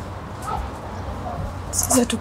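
A pause in a woman's speech, over a steady low background hum with a few faint short sounds about half a second in. Her voice comes back near the end, starting with a hissing consonant.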